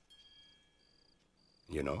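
A cricket chirping faintly, short high chirps repeating evenly about twice a second.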